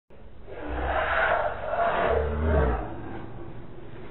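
Two loud, rumbling swells of sound, each about a second long, then a lower steady noise: an intro sound effect over the opening screen.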